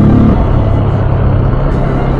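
Yamaha FZ-S motorcycle's single-cylinder engine running steadily under way on the road, at about 35 km/h.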